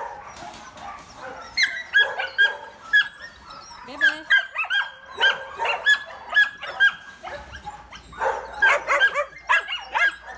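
Several young dogs barking in play, short high-pitched barks coming several a second in bouts with brief lulls between.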